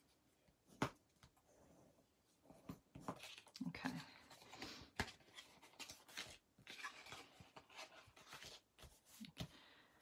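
Faint scraping strokes of a bone folder burnishing the score lines of cardstock, with paper rustling as the sheet is handled. A sharp tap about a second in and another near the middle.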